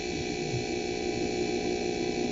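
Steady electrical hum and hiss under the recording, made of several constant tones held at an even level.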